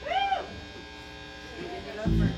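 Steady electric hum and buzz from plugged-in guitar amplifiers and the PA, with a brief high note near the start that rises and then falls.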